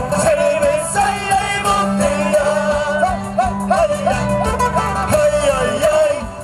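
Live Andean toril music played loud through stage speakers: strummed guitars and other string instruments with singing, the melody line wavering and ornamented over a steady low note.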